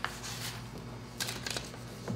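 Sheets of paper being handled and shuffled on a table. There is a sharp rustle right at the start and a quick cluster of rustles and taps about a second and a quarter in, over a steady low room hum.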